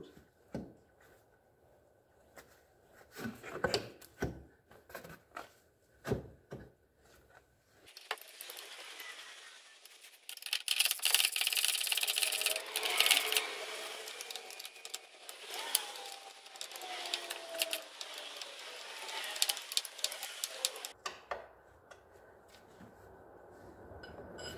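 Hand-tool work on an ATV's front control arm. Scattered metal clinks and knocks give way, about eight seconds in, to a long stretch of rapid clicking and scraping, as when the arm's mounting bolts are run in with a wrench. The clicking eases off shortly before the end.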